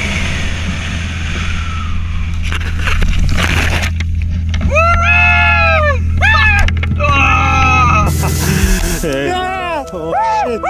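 Wind rushing and rumbling over the microphone during the fast descent over the field. About halfway through, a man yells in three or four long, rising-and-falling shouts.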